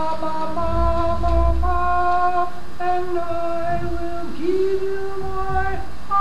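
A section of singers sings one part of a barbershop tag a cappella, in unison. They hold long notes that step to a new pitch every second or so.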